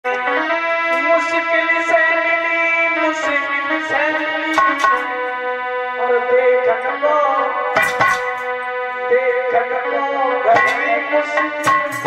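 A keyboard instrument plays a melody in long held notes, with a few sharp percussion strikes about eight seconds in and again near the end.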